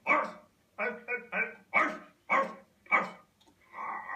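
A man shouting "Arse!" over and over in short, bark-like bursts, about seven in quick succession.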